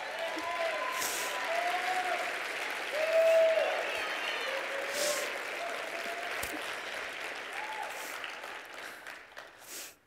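Audience applauding, with scattered shouts from the crowd, dying away near the end.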